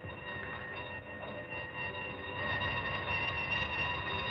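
Electric alarm bell with twin gongs ringing continuously, a steady, loud metallic ring from the rapid striker.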